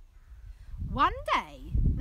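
Two quick vocal calls about a second in, each gliding up and then down in pitch, over a low steady rumble.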